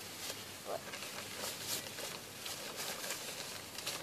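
Soft, irregular rustling of a Trek Light Compact nylon hammock as the person lying in it shifts and reaches up to grip its edge.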